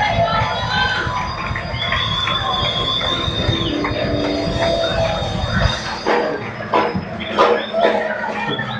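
Loud worship music with a heavy bass beat, and the voices of a crowd over it. The bass drops out suddenly a little before six seconds in, leaving sharp percussive hits and voices.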